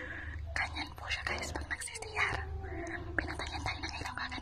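Whispered speech, breathy and broken into short phrases, over a steady low hum.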